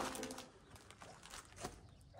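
Background music fading out in the first half second, then faint outdoor ambience with a bird calling.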